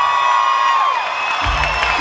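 Live arena concert sound through the PA with the crowd cheering: a long held high note falls away about a second in, with low bass thumps near the start and near the end.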